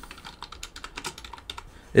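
Computer keyboard typing: an irregular run of light key clicks.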